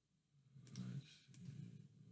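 Faint clicks of a computer keyboard as code is being edited: a couple of sharp clicks about two-thirds of a second in and another just past a second, over a low murmur.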